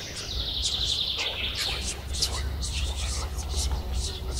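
Birds chirping, with a fast trill in the first second and many short high calls throughout, over a steady low rumble.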